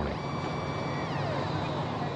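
Steady outdoor city street noise, with faint high whining tones that slide down in pitch about a second in.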